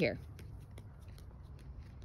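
Low wind rumble on the microphone with faint, irregular rustling and small clicks scattered through it.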